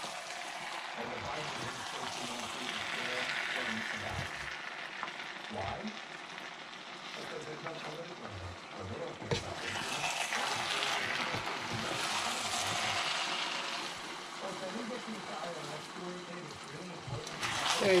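Black glutinous rice in a coconut-milk and sugar syrup sizzling in a wok, stirred and turned with two wooden spatulas. The hiss rises and falls in waves. The rice is being stirred constantly to soak up the syrup and keep it from sticking.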